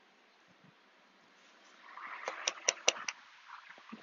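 Near silence, then about two seconds in a brief spell of rustling with four or five sharp clicks, from hands handling the glittered birdhouse over the table cover.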